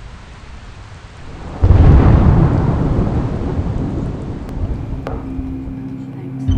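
Thunder sound effect: a rush of noise builds, then a sudden loud clap comes about a second and a half in, rolling off into a long, slowly fading rumble.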